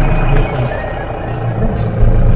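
Safari jeep's engine running as the vehicle drives, a steady low drone that eases off about half a second in and picks up again near the end.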